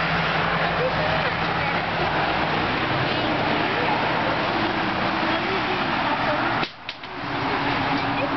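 Steady loud droning noise with a low hum and faint voices over it. It cuts out briefly near the end, then returns.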